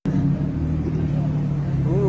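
Porsche Cayman's engine running steadily at low revs as the car pulls slowly away, a deep, even drone through a loud exhaust.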